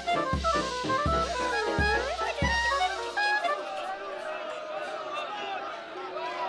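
Cartoon soundtrack music of drums and a trumpet played in a jumble, with sliding brass notes. Low drum beats come about one every three-quarters of a second and stop about halfway through.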